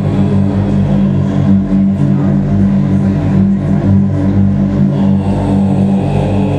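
Black metal band playing live: a loud, dense wall of distorted guitar and bass holding sustained low chords, with drums faint underneath.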